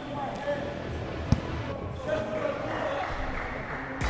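Basketball game ambience in a sports hall: one sharp bounce of the ball on the court about a second in, over faint players' voices.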